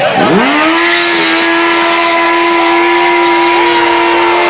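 Sport motorcycle engine held at high revs during a burnout, its rear tyre spinning on the concrete. The revs dip and climb back right at the start, then hold steady.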